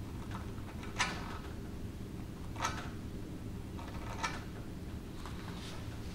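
A Stanley knife blade scraping across hardened two-part wood filler, trimming it flush with the wood. There are three short scrapes about a second and a half apart, over a steady low hum.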